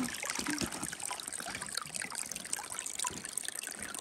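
Small spring-fed creek trickling and splashing over moss and stones, a steady stream of little irregular drips and gurgles.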